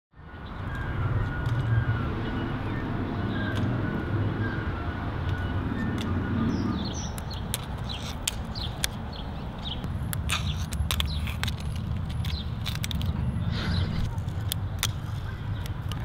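Fingerboard clicking and clacking on a granite ledge, a quick series of sharp clicks from the board's pops, landings and wheels on the stone starting about halfway through. Under it runs a steady low rumble of street traffic.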